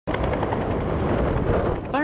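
Huey-type (Bell UH-1) helicopter sitting on the ground with its two-bladed main rotor turning, a loud, steady, fast chopping beat over engine noise.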